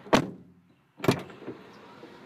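Car door being opened from outside: a sharp knock of the latch, then a second knock about a second later.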